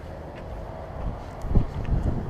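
Wind buffeting the microphone as a low, uneven rumble, quiet at first and gusting stronger about one and a half seconds in.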